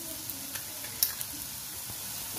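Grated raw mango frying in hot oil in a non-stick kadai, sizzling steadily, with one sharp click about a second in.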